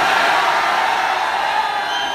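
A large crowd cheering and shouting together, a loud, steady mass of many voices.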